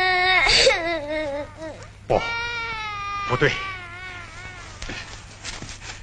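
A long sung note ends about half a second in. A child then cries in wavering, broken wails that fade toward the end, over a steady low soundtrack hum.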